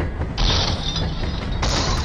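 Cartoon sound effects over background music: a mechanical rattling with two bursts of hiss, the first about half a second in and the second from about a second and a half.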